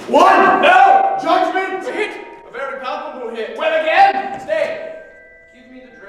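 A single voice sings or vocalizes in drawn-out, wavering notes for about five seconds, fading away near the end and leaving a few faint held tones.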